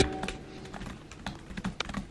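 Typing on a laptop keyboard: quiet, irregular key clicks. Background music fades out at the start.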